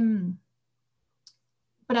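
A woman's drawn-out hesitation sound 'eh' trailing off, then a pause of about a second and a half in silence, broken once by a faint, short click, before her speech picks up again at the very end.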